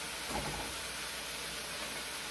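Onions and red bell pepper frying in olive oil in a pan on a gas burner, a steady, even sizzle as minced garlic goes in.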